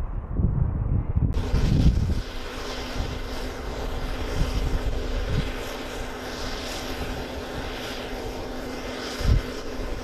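Wind buffeting the microphone for about the first second, then the steady noise of a Navy LCAC hovercraft's gas turbines and fans running, with a steady low hum under it. A brief low thump comes near the end.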